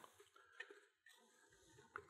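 Near silence: room tone, with a couple of faint light ticks.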